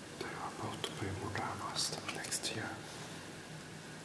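A person whispering a few words, with sharp hissing 's' sounds, over a faint steady background hiss.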